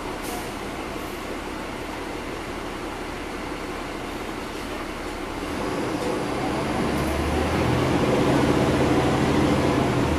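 Caterpillar C13 diesel engine of a 2009 NABI 40-SFW transit bus, heard from the rear seats inside the cabin with its engine cooling fans running. About five or six seconds in it grows louder and a low steady drone comes up.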